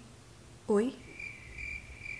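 Cricket chirping: a faint, thin high trill that starts about a second in, just after a woman says a short 'Oi?'.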